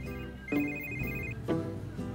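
An electronic phone ringtone, a high trilling ring in two bursts, the second from about half a second in to just past one second, over soft background music.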